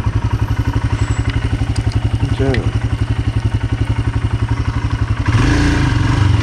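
Motorcycle engine running at low road speed with a rapid, even low beat. About five seconds in it grows louder, with a rush of noise added.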